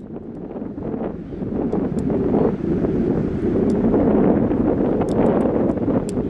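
Wind buffeting the microphone, a rough, low noise that fades in and grows louder over the first two seconds, then holds steady, with a few faint ticks.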